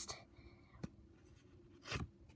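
Pokémon trading cards handled in the hand: a faint click about a second in, then a short papery brushing near the end as one card slides off the front of the stack.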